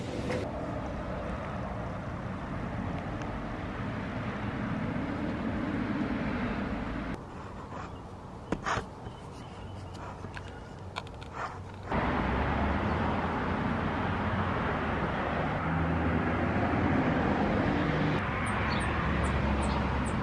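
Steady outdoor street noise coming in through an open screen door, with passing traffic. It drops quieter for several seconds in the middle, and a few short high bird chirps come near the end.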